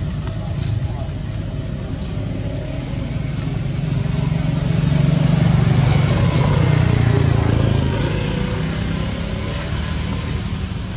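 A motor vehicle passing: a low engine rumble that builds to its loudest around the middle and then fades away.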